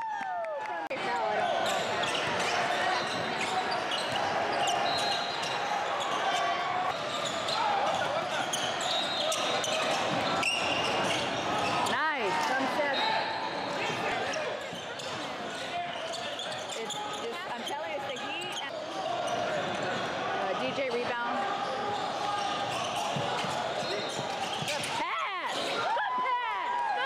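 Basketball game in a gym: many voices talking over one another, with a ball bouncing on the hardwood court and sharp sneaker squeaks a few times.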